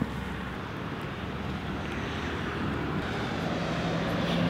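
Steady rumble of a distant vehicle, growing slowly louder, with a low steady hum coming in near the end.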